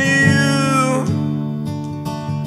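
Two acoustic guitars strumming under a man's sung note held for about a second, which bends down and stops; the guitar chords then ring on alone.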